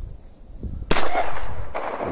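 A single shotgun shot about a second in, loud and sharp, with a long echo fading away after it.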